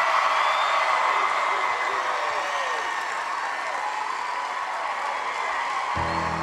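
Studio audience cheering and applauding, with a few whoops, slowly dying down.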